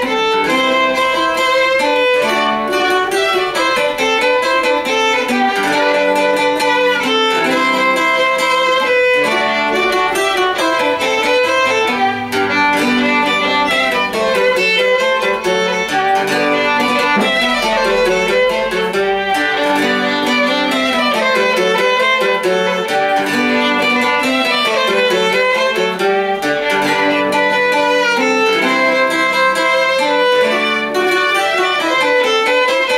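Violin and mandola duo playing an old dance tune together: bowed violin over the plucked mandola, without pause.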